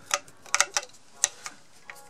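A handful of sharp, irregular clicks as a screwdriver works the screws of the mixer's metal gearbox cover, snugging them down.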